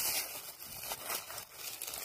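Dry fallen leaves rustling and crackling as a hand digs in and pulls a large porcini mushroom out of the forest floor, in small irregular bursts.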